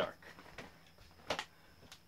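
A single sharp click of a light switch being flipped off, a little over a second in, against quiet room tone.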